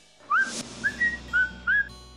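A person whistling a tune: short clear notes, each sliding up into its pitch, about two a second.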